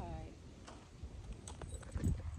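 A short high-pitched vocal sound right at the start, then a few faint light clicks and taps over a low rumble.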